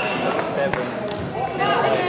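Players' voices talking indistinctly in a large sports hall, with one sharp knock about three quarters of a second in.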